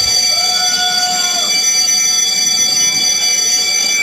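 Loud, steady electronic alarm-like tone made of several high pitches held together, with a lower tone that slides downward about a second and a half in; it starts and stops abruptly.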